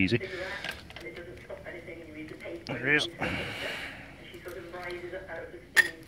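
A man's quiet muttering and straining sounds while he works at a piston by hand, with faint handling rustle and a sharp click near the end.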